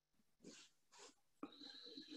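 Near silence: quiet room tone over a video call, with two faint short sounds about half a second and a second in, and a faint longer sound with a thin high tone starting about a second and a half in.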